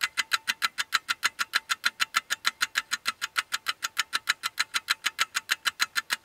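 A rapid, even ticking, about six or seven sharp ticks a second, steady in rate and level.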